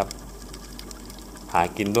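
A man's narration pauses, leaving faint crackling and ticking underwater ambience with a low hum, before his voice resumes about one and a half seconds in.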